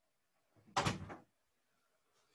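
A single short thump with a brief rattle about a second in, standing out against a quiet room.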